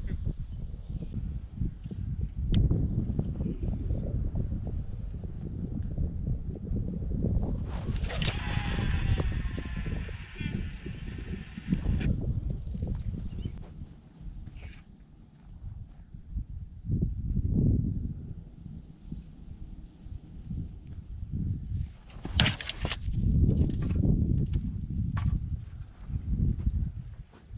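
Wind buffeting the microphone in gusts, with a single sharp click about two and a half seconds in and a cluster of sharp clicks and rustling near the end.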